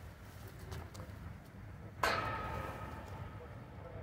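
Steady low rumble of city traffic, broken about two seconds in by a sudden loud sound that rings briefly and fades over about a second and a half.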